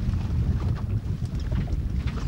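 Wind buffeting the microphone: a steady, fluttering low rumble, with a few faint clicks from the net and fish being handled.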